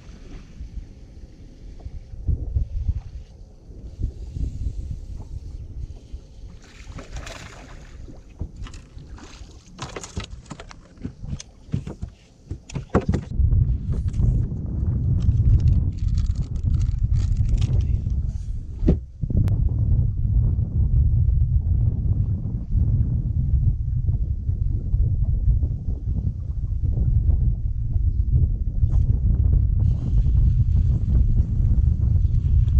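Wind buffeting the microphone, a low rumble that gets much louder about halfway through. Around the middle come a run of clicks and rustles as tackle packaging is handled in an open deck compartment.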